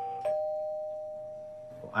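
Doorbell chime ringing ding-dong: a higher note, then a lower note struck about a quarter second later, both slowly fading out.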